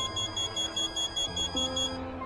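Mobile phone ringing: a high electronic ringtone chirping rapidly, several pulses a second, that stops near the end.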